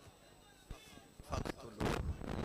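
After a near-quiet second, two short, loud bangs about half a second apart.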